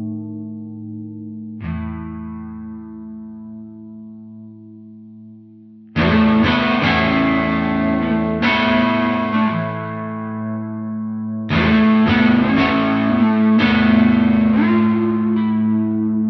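Telecaster-style electric guitar playing an open A-string drone under a melody picked on the D string. A note rings and fades over the first few seconds; about six seconds in, the picking turns louder and busier, with quick runs of notes over the steady drone.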